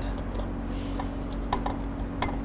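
A few faint clicks and taps of a plastic electrical plug and cord being handled and brought up to a wall outlet, over a steady low background hum.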